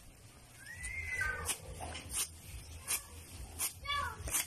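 Short high animal cries: one rising and falling about a second in, another falling near the end. Between them come short sharp swishes, roughly one every 0.7 seconds.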